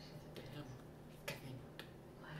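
A few short, sharp clicks from hands striking as a man signs, the clearest two in the second half, over a faint steady low hum.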